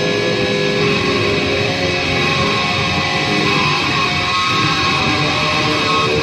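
EVH Shark electric guitar played through an amplifier with heavy distortion: a continuous run of quick, changing shred lead notes with no pauses.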